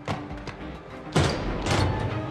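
Tense film score music under the sound of a heavy metal door being pulled open: a sharp knock at the start, then a loud noisy hit about a second in and another just before the end.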